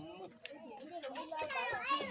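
Background chatter of several voices, with a child's high voice coming in near the end.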